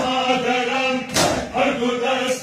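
Large crowd of men chanting a Farsi noha in unison, with a sharp collective stroke of chest-beating (matam) landing once about a second in, part of a beat that comes roughly every second and a third.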